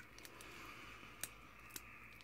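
Faint handling of a small plastic cosmetic stick in the fingers: a soft, even scraping hiss with a couple of light clicks.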